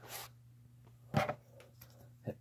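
Quiet handling noise: a short hiss at the start and a brief scrape about a second in, with a smaller one near the end, over a faint steady low hum.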